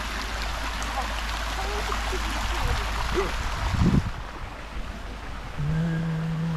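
Steady rushing wind and road noise over a low rumble, as from a moving open-sided vehicle. It swells into a loud low thump about four seconds in and then drops away. A short low hum follows near the end.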